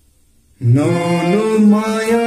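Harmonium playing a phrase of held notes that step upward in pitch, starting about half a second in.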